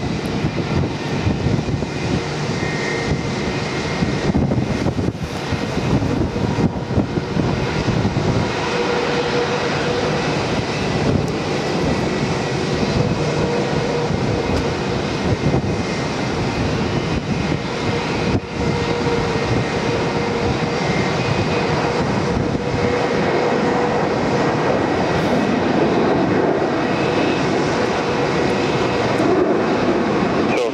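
Boeing 747's four jet engines running steadily on final approach, a broad roar with a steady whine in it and a low rumble underneath, growing a little louder toward the end.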